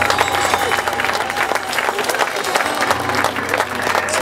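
Live audience applauding as a song ends, many hands clapping unevenly throughout, with a faint steady held tone beneath.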